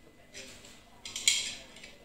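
A utensil scraping melted dark chocolate around a ceramic plate. It scrapes twice: briefly and faintly near the start, then louder for most of a second from about a second in.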